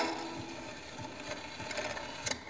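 Pathé Diamond portable wind-up gramophone with the record spinning: the last of the music fades out about half a second in, leaving the needle's surface hiss and faint mechanical ticking from the turntable and soundbox.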